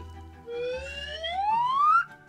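A rising whistle-like sound effect: one smooth upward glide that starts about half a second in and grows louder, over soft background music.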